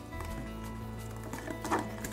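A few light knocks and scrapes from a plastic container tipped against a stainless steel mixing bowl as gelatin mixture is poured in, over steady background music.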